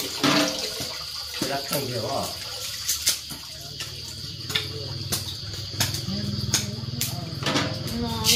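Water splashing and trickling as soaked rice is scooped out of a large metal pot of water with a plastic bowl and left to drain, with short knocks of the bowl against the pot. A low steady hum joins in about halfway through.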